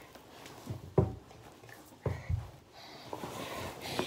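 A sharp thump about a second in and a duller double thump a little after two seconds, with soft rustling of clothing between: a child moving about and tossing hats and hoodies in a bathtub.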